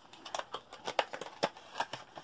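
Clear plastic blister packaging handled and pulled open by hand, giving an irregular run of small clicks and crackles.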